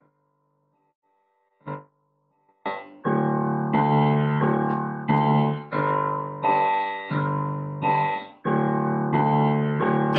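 Piano playing an introduction of repeated chords, struck about every 0.7 seconds, each dying away before the next, starting about three seconds in. A single short knock comes just before the playing starts.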